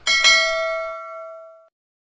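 Notification-bell ding sound effect of a subscribe-button animation. A bright bell tone is struck twice in quick succession, then rings and fades, and cuts off after about a second and a half.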